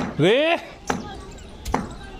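Sharp knocks of a hard object, such as a piece of brick, being tapped against a concrete floor, a few times about a second apart. A short call in a person's voice comes near the start.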